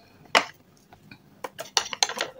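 Sharp clicks of red shale stone chips: one loud click about a third of a second in, then a quick run of smaller clicks in the second half.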